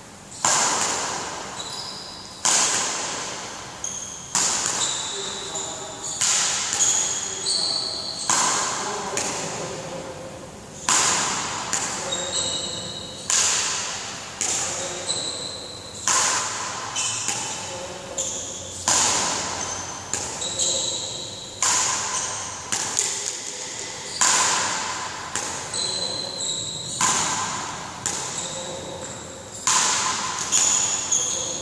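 Badminton rackets hitting a shuttlecock back and forth in a rally, a sharp crack about every second and a half, each echoing in a large hall. Short high squeaks come between some of the hits.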